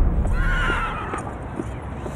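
A horse whinnies once, a wavering call about half a second in, then its hooves clop slowly on pavement. A low rumble fades out at the start.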